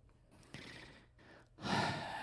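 A man breathing into a handheld microphone: a faint breath about half a second in, then a louder breathy sigh near the end.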